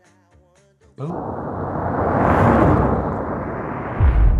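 Cinematic impact sound effect: a sudden deep boom about a second in, then a loud rushing noise that swells and eases off, with low rumble underneath.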